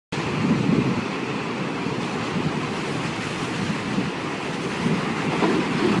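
A steady rushing, wind-like noise effect with a few slow swells, starting abruptly and cutting off suddenly at the end.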